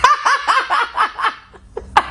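A man laughing hard: a quick run of about eight short bursts that trails off about a second and a half in.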